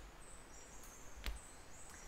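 Faint tropical forest ambience with wildlife calling in short, high, thin chirps, and one soft thump a little over a second in.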